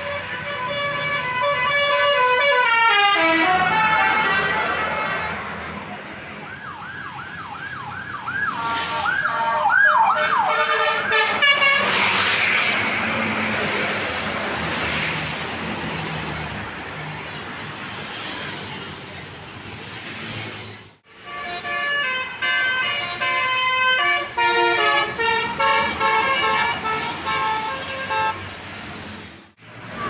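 Tour coaches' musical multi-trumpet air horns (basuri, 'telolet' horns) playing tunes as they pass: a descending run of notes, then a stretch of repeated whooping glides about two a second, and after a brief gap another melodic run of short stepped notes. A loud rush of a coach going by sits between them, over steady road traffic.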